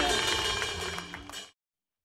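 Outdoor festival stage sound fading away, with a few faint taps, then cut off about a second and a half in. It follows the tail of a long falling shout.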